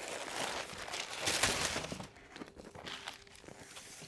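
Crumpled brown kraft packing paper rustling and crinkling as it is handled and pushed aside. It dies down after about two seconds to a few faint light taps.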